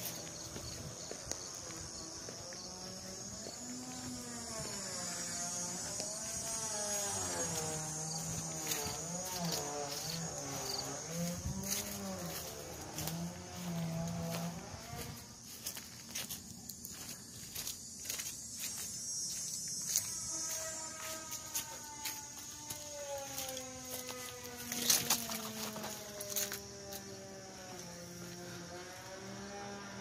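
Crickets chirping steadily in a high, even band, with scattered footsteps. Over this runs a wavering pitched tune in two long stretches, one in the first half and one after the middle.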